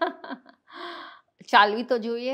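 A woman laughing: a few quick voiced bursts at the start, a softer breath around the middle, and a louder burst of laughter near the end.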